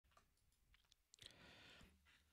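Near silence, with a few faint computer-mouse clicks and a brief faint hiss just after the middle.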